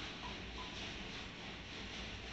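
Faint steady hiss with a low hum of background noise, with no distinct event standing out.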